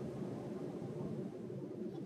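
Quiet, steady low background noise with no distinct events: room tone.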